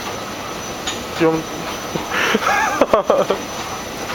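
Steady mechanical hum of a moving subway-station escalator, with a man's voice breaking in briefly about a second in and again for about a second midway.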